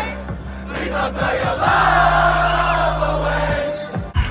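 Loud live hip-hop music through a festival sound system, with long, deep bass notes that drop out briefly about a second in and again near the end, and a packed crowd singing and shouting along.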